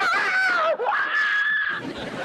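A person screaming in a high, wavering wail. The wail drops suddenly, then holds a steady high note for under a second before breaking off near the end.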